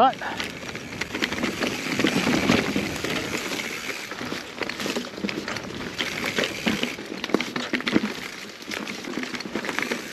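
Mountain bike rolling fast down a rough, rocky dirt trail: tyres crunching over rocks and dirt, with continuous rattling and frequent sharp knocks from the bike's chain, frame and suspension.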